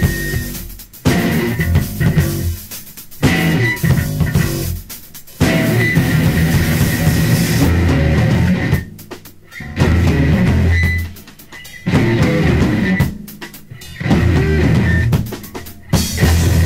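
Rock band recording with drum kit, electric guitar and bass playing loud, stop-start passages, the full band cutting out briefly every second or two.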